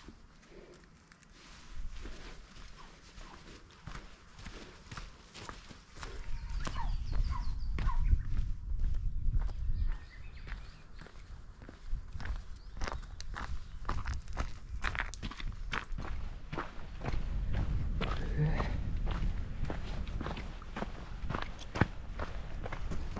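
A hiker's footsteps on a mountain ridge trail: a steady run of sharp steps. A low rumble comes and goes beneath them from about six seconds in.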